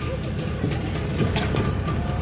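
Small boat's Yamaha outboard motor running at a steady idle, a low rumble, with faint voices over it.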